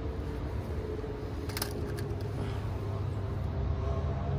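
A steady low rumble of outdoor background noise, with a brief cluster of clicks about a second and a half in.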